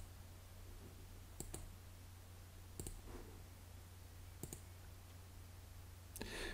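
Faint computer mouse clicks: three quick double clicks about a second and a half apart, over a low steady hum.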